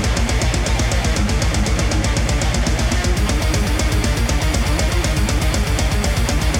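Death metal recording: distorted electric guitars over fast, even kick-drum strokes and cymbals, with no vocals in this stretch.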